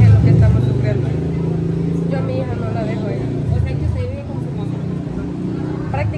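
Street traffic: a motor vehicle's engine rumbling close by, loudest in the first second, with people's voices talking underneath.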